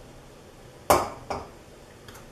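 Two sharp knocks about half a second apart as a small cup is tapped against the rim of a stainless steel pot, the first louder and briefly ringing.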